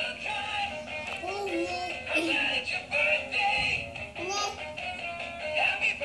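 Animated plush sock monkey toy in a party hat playing a birthday song with singing through its small speaker, thin-sounding with almost no bass.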